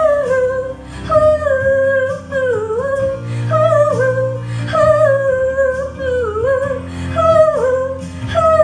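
Music: a high female voice sings a wordless melody in phrases about a second long, each sliding down at its end, over a soft, steady low accompaniment.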